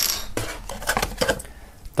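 A metal pin-back button set down on a wooden tabletop: a sharp click with a brief metallic ring at the start. It is followed by a few lighter clicks and taps of cardboard and paper being handled as a poster is lifted out of a box.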